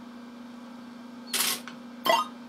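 Steady low hum from a Universal Tropicana 7st pachislot machine, broken about one and a half seconds in by a short rattle of a medal going into the coin slot to place a bet.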